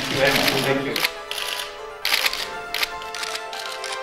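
Camera shutters clicking in quick bursts over soft background music with held notes; murmured voices in the first second.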